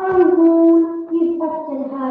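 A child's voice holding a long, drawn-out cry on one vowel, loud and sagging slightly in pitch, like a melodramatic 'ohhh'.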